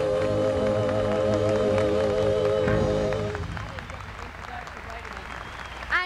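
A live band holds the final chord of the song, with a warbling held note, and stops about three seconds in; audience applause runs underneath and carries on after the music ends.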